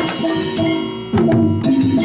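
Balinese gamelan playing for a dance, with repeating metallophone notes and drum strokes. A sudden loud accent comes just over a second in, after a brief dip.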